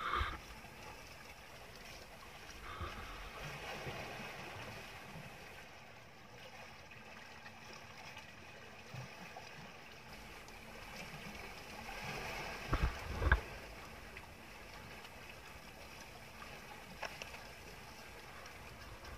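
Sea water splashing and lapping beside an outrigger boat as a hooked swordfish struggles at the surface. Two dull thumps about half a second apart come a little past the middle.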